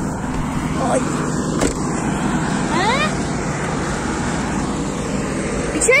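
An engine running steadily with a low hum, with a sharp click about a second and a half in.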